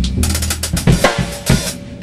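Rock drum kit played hard: a rapid run of snare and cymbal strokes with heavy kick-drum hits, over a low amplified note held underneath. The rapid strokes stop shortly before the end.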